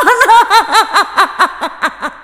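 A high-pitched human voice in a quick run of short pulses, each rising and falling in pitch, about five a second, growing fainter.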